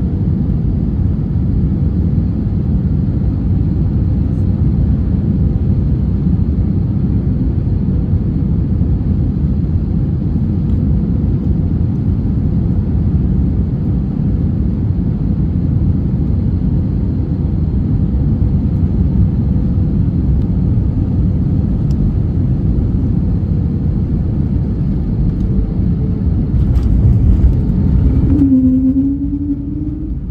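Cabin sound of an Airbus A320-family airliner on final approach: a steady, loud low rumble of engines and airflow. Near the end it touches down, with a brief jolt and a louder rumble as it rolls out on the runway.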